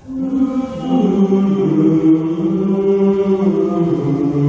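Male vocal ensemble starting a piece: the voices enter within the first second and hold slow, sustained chords.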